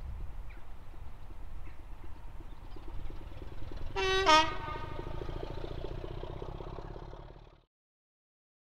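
BR Class 25 diesel locomotive D7612 idling, its Sulzer six-cylinder engine a steady low rumble. About four seconds in it gives a short two-tone horn toot, a higher note stepping down to a lower one, and this is the loudest sound. The sound fades out near the end.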